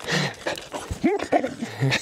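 A dog giving a few short whines and yips, excited in rough play.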